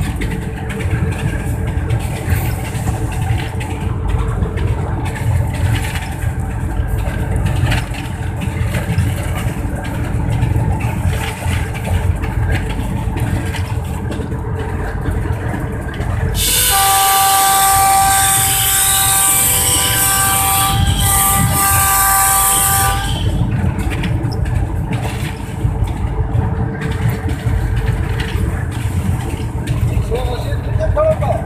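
PHA-20 diesel locomotive running at speed, heard from the cab side window as a steady rumble of engine and wheels. A little past halfway, its air horn sounds one long blast of about six seconds, a chord of several steady tones.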